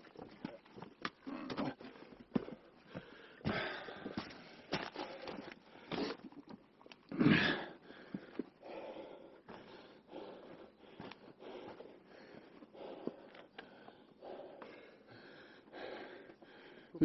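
Someone breathing hard while walking over rocky forest ground, with scattered footsteps, crunches and rustles. The loudest sound is a short rush of noise about seven seconds in.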